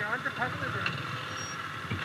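Yamaha YBR-G motorcycle's small single-cylinder four-stroke engine idling low and steady on a muddy trail, with a faint voice near the start.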